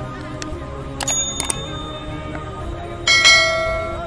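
A bell-like notification chime sound effect rings out about three seconds in, the loudest sound, dying away over about a second; a few sharp clicks come before it, all over a background music bed.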